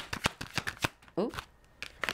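A deck of oracle cards being shuffled by hand: a quick run of sharp card snaps that stops about a second in, with a few faint snaps near the end.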